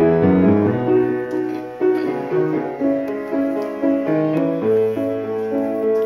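Piano being played: chords with single notes struck over them every second or so, each note ringing on and fading.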